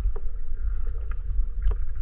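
Underwater sound picked up by a GoPro's microphone while snorkeling: a steady low, muffled rumble of water moving around the camera, with a few faint clicks.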